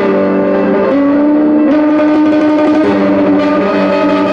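Electric mandolin played as a slow melody of held notes, the pitch stepping to a new note about every second.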